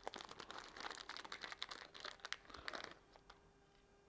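Faint crinkling and rustling of a small clear plastic bag being handled and opened by hand, stopping about three seconds in.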